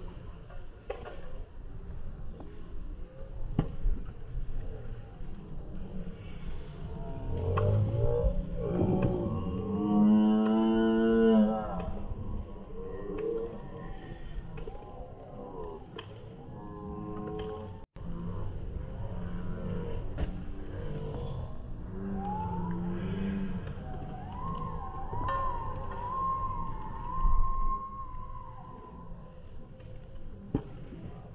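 Voices shouting and calling out across an outdoor baseball field, including one long drawn-out shout about ten seconds in and a wavering higher call near the end, with a few sharp knocks between.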